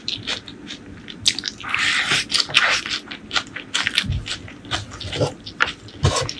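Close-miked eating: crunching and chewing of a crisp, stringy fried food taken by hand, with many sharp crackles and a dense stretch of crunching about two seconds in.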